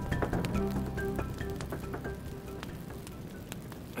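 Small fire of dry twigs and driftwood just catching, crackling with many quick sharp snaps, under background music with sustained notes.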